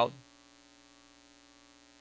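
Near silence with a faint, steady electrical mains hum, heard as a row of even, unchanging tones, after the tail of a spoken word dies away at the very start.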